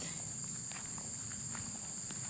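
A steady high-pitched chorus of insects, with a few faint footsteps on grass.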